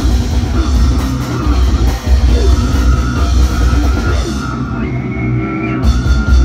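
Live brutal death metal band playing at full volume: drum kit and heavily distorted guitars with a dense, heavy low end. Near the end the cymbals drop out for about a second, then the full band crashes back in.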